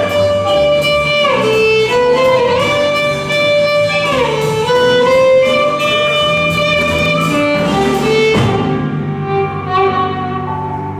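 Live jazz combo: a violin plays long held notes that slide down and back up between pitches, over piano, upright bass and drums. The cymbal time-keeping stops about eight and a half seconds in.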